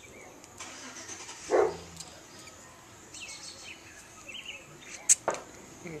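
A cigar being lit with a lighter and puffed on, against steady outdoor background noise. A short, louder sound comes about a second and a half in, and a sharp click about five seconds in.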